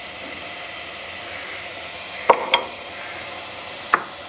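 Steady sizzling hiss of food frying, with a few short sharp clicks, two a little past halfway and one near the end.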